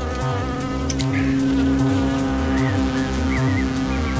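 A fly buzzing steadily over music with a pulsing low beat.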